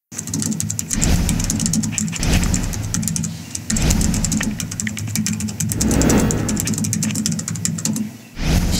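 Rapid clicking of a computer keyboard being typed on, over a low steady drone that swells every second or two.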